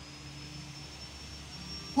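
A pause in the preaching holds only a faint, steady hum with a thin high whine above it: the background noise of the room and the microphone's sound system.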